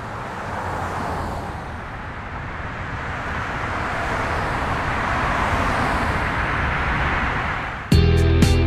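Night city traffic noise: a steady rushing with a low hum that swells gradually in loudness.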